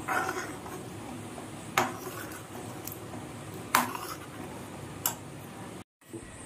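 Metal ladle clinking and scraping against an aluminium pan while stirring food, four sharp clinks a second or two apart.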